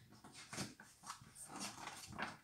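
Faint rustling of a paperback picture book's pages being handled and turned.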